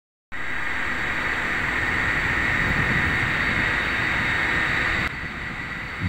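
Steady industrial plant noise on an open rooftop, a continuous rushing din with no distinct machine rhythm, that drops to a lower level about five seconds in.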